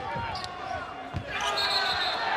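Basketball bouncing on a hardwood court during live play, a couple of dribbles about a second apart, over arena crowd noise.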